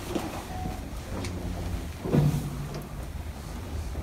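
Steady low rumble of room and handling noise, with a few faint clicks and a brief, faint murmur of a voice about two seconds in.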